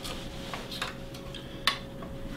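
Coins dropped into a small metal tzedakah box: a few light clinks and clicks, the sharpest about one and a half seconds in.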